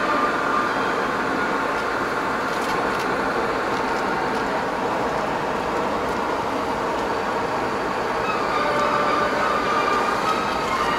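Steady road and engine noise heard inside the cabin of a vehicle driving at a constant speed.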